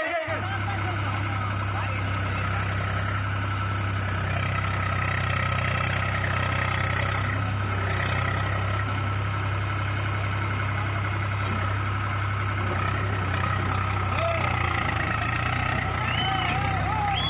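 Farm tractor's diesel engine running steadily with a constant low drone, over the rush of river water and men's voices.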